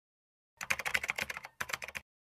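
A typing sound effect: a quick run of keyboard-like key clicks, starting about half a second in.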